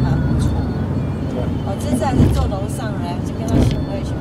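Steady low road and engine rumble inside a moving car's cabin, with voices in the background.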